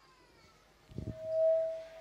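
Microphone feedback through a PA system: a single steady ringing tone that swells and fades over about a second, just after a faint bump.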